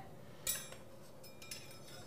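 Stainless steel kitchen knife being handled at a knife block: a light metallic clink about half a second in that rings briefly, then a few fainter clinks as the blades touch.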